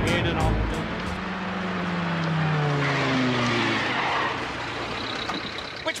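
A car engine running as the car approaches and slows, its note falling steadily over about three seconds. The last notes of a song fade at the start.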